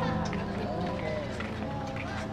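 Outdoor street ambience: people's voices mixed with music playing in the background.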